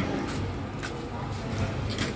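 A few light clicks from a data-logger pole clamp being fitted onto the back of a handheld GNSS controller, over a steady low background hum.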